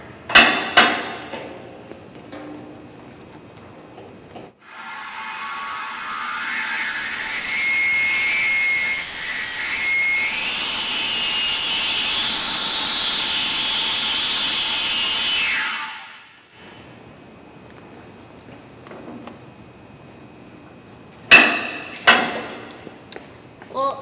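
Compressed air hissing out of a hose for about eleven seconds, starting and stopping abruptly, with a faint whistle that rises and falls partway through; the air is flushing the oxygen out of the glass bowl. A sharp knock comes just before the hiss, and two more come near the end.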